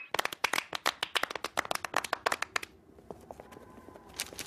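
A small crowd clapping: quick, irregular separate claps that thin out and stop about two and a half seconds in.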